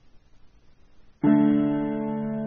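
Piano music: after a faint hiss, a chord is struck a little over a second in and left ringing.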